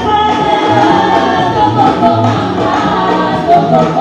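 A church congregation singing a gospel worship song together in chorus.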